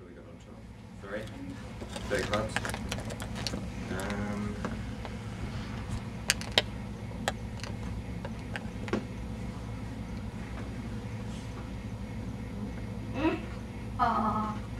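Faint, indistinct voices in the background over a steady low hum, with a few sharp clicks around the middle.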